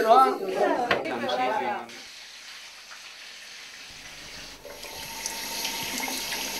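Kitchen tap running into a sink while a tomato is rinsed under the stream. The steady water noise comes in about four and a half seconds in.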